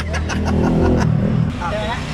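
A motor vehicle passing on the road close by: a low rumble that swells to its loudest about a second in and then fades, with a few light clicks over it.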